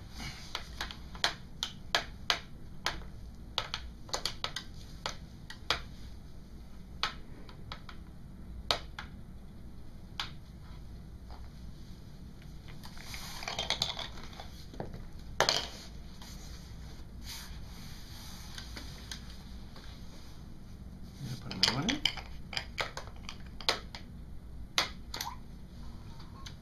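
Plastic toy coins clicking and clattering against a plastic toy piggy bank and the tabletop as they are handled and pushed into its slot: a string of irregular sharp clicks.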